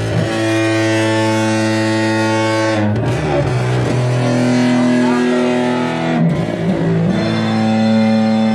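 Live band music: slow, sustained chords, with distorted electric guitar, changing about every three seconds.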